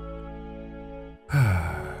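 Soft background music of held, sustained chords, breaking off briefly just past a second in; then a man's long sigh, breathy and falling in pitch, the loudest sound, with the music going on beneath it.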